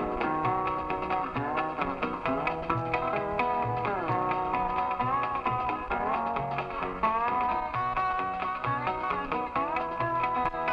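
Country band's instrumental break between sung verses, on a home reel-to-reel tape recording: a lead line with sliding notes over guitar and a steady low bass beat.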